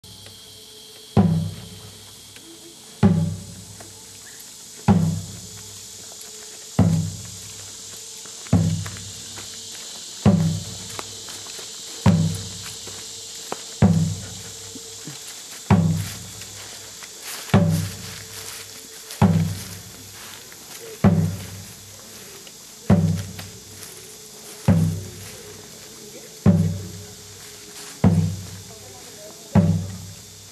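A deep drum beaten slowly and evenly, about one stroke every two seconds, each stroke booming and dying away quickly. Insects chirr steadily underneath.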